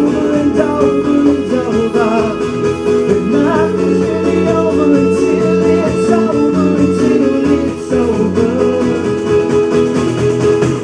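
A live song: a male voice singing over a strummed acoustic guitar.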